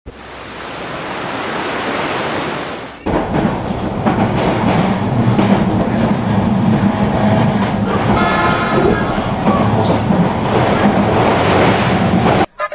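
A swelling rush of noise that cuts off sharply about three seconds in, followed by a passenger train running, heard from the carriage doorway as a loud, dense rumble and rattle. Brief higher tones sound about eight seconds in.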